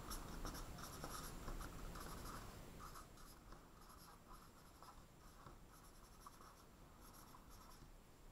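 Marker pen writing on a whiteboard: faint, short scratchy strokes, growing quieter after about three seconds.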